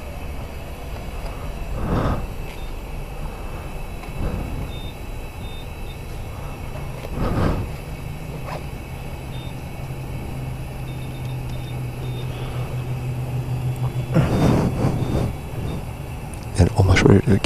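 A motor vehicle's engine running with a steady low hum that grows louder toward the end, with a few faint, short high-pitched beeps.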